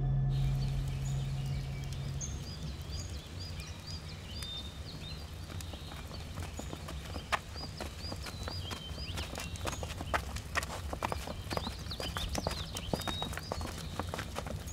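Outdoor film ambience: small birds chirping, with a low hum fading out in the first two seconds. Irregular knocking steps or hoof clops grow denser in the second half.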